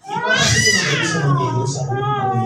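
A single drawn-out, high-pitched cry that rises and then falls in pitch over about two seconds, heard over a man talking.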